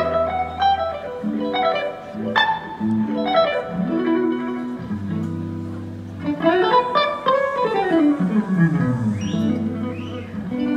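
Live electric guitar solo: quick runs of single notes and slides over low held notes, with a long descending run in the second half.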